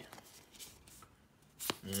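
A stack of Pokémon trading cards handled in the hands: faint sliding and rustling of the cards, then one sharp click near the end.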